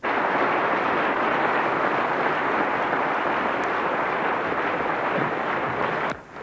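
A large hall full of people applauding in a dense, steady ovation. It starts abruptly and cuts off suddenly at the end.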